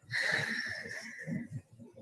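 A high-pitched squeal that starts suddenly and fades out after about a second and a half.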